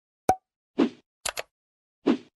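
Sound effects of an animated subscribe-button overlay: a short pop, then a quick whoosh, then a mouse double-click.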